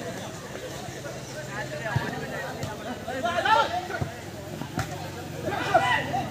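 Football crowd of spectators shouting and calling out, with louder shouts about three and a half seconds in and again near the end. A few sharp knocks stand out.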